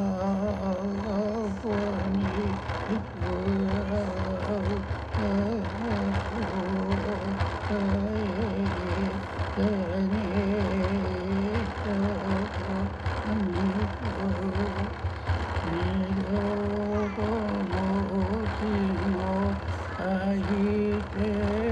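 Traditional Innu drum song: a voice chanting a wavering melody over a quick, steady beat on an Innu frame drum.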